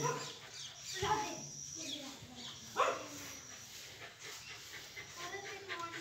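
A dog giving two short barks, about a second in and just under three seconds in.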